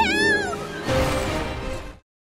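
A cartoon girl's high-pitched shriek of alarm, rising then falling over about half a second, over background music. The music swells briefly and cuts off abruptly at the end.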